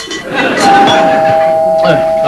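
Studio audience laughing. Under a second in, a two-note door chime sounds, a higher note followed by a lower one, both held ringing.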